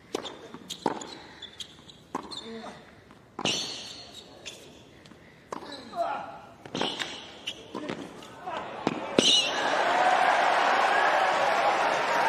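Tennis rally: ball struck by rackets and bouncing on a hard court, sharp knocks about every second. About nine seconds in the crowd breaks into applause and cheering as the point ends.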